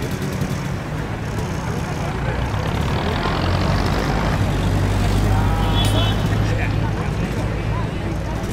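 Street ambience: indistinct crowd chatter over a low motor-vehicle engine rumble, which grows louder through the middle and eases near the end.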